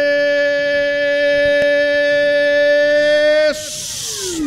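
One long note held at a steady pitch at the end of a radio goal jingle. It cuts off about three and a half seconds in, followed by a brief burst of hiss.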